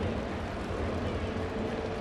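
Ballpark crowd ambience: a steady low rumble from a sparse crowd with no cheering swell, and a faint steady tone coming in about halfway through.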